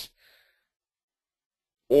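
A pause in a man's speech: a faint breath just after his words stop, then silence until his voice starts again near the end.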